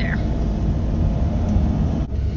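Steady low rumble of a van driving, heard inside the cabin.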